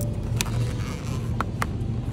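Background music with a low, pulsing bass, broken by a few sharp clicks.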